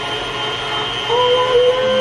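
Steady whirring machine noise with a thin, constant high whine, from a running kitchen appliance. About a second in, a held, slightly wavering pitched tone joins it.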